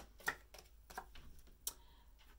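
Tarot cards being handled: a few light, sharp card snaps and taps as a card is drawn from the deck and turned over, the sharpest about a third of a second in.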